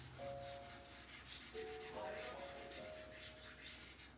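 Chalk pastel rubbed quickly back and forth on paper, a faint, dry scratching made of many short strokes.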